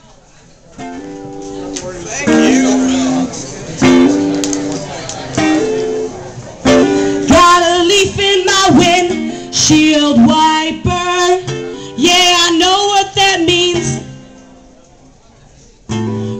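Acoustic guitar picking the opening of a song, single notes ringing out; from about seven seconds in, a voice joins over the playing. Near the end the sound drops away to quiet for a moment.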